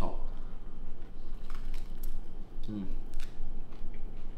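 Biting into and chewing a soft tortilla wrap, with small scattered clicks and crinkles, then an appreciative hummed "mmm" near the end.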